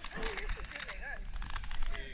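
Indistinct voices of people talking, with a few scattered clicks.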